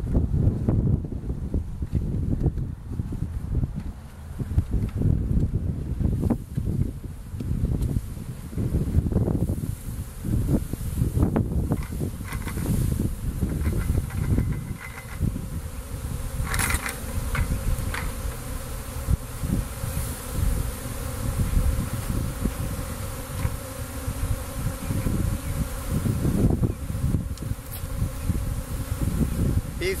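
A mass of honeybees from a wild colony buzzing in the air as the colony is tipped out of a bucket onto a sheet in front of a hive; a steady, pitched hum settles in about halfway through. Low rumbles and knocks run through the first half.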